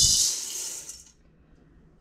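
Dry mixed beans poured from a glass jar into an aluminium colander: a dense, high-pitched rattling hiss of beans hitting the metal, which stops about a second in.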